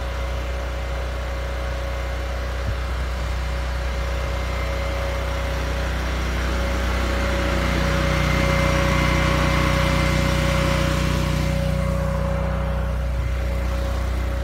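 Engine-driven welder-generator running steadily, supplying power to pre-heat the combines before they are started in the cold. Its hum grows louder in the middle and then eases.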